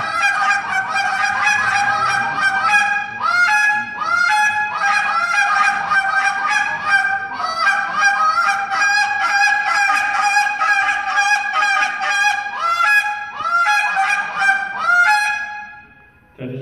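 Field Proven Calls goose call blown in a fast competition routine: a rapid, unbroken run of honks and clucks, several notes a second, many of them cracking sharply upward in pitch. The calling stops just before the end.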